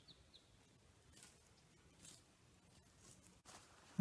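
Near silence in still open air, with two faint, very short high chirps just at the start.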